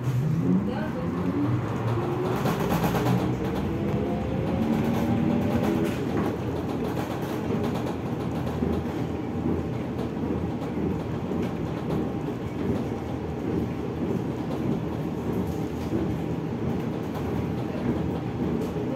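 ZiU-682G trolleybus heard from inside the passenger cabin as it pulls away: the whine of its electric traction drive rises in pitch over the first six seconds or so, then gives way to a steady low rumble of the moving bus.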